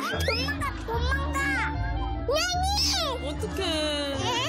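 Young children's high-pitched squeals and calls, with wordless sounds that sweep up and down in pitch, over background music with a steady bass line.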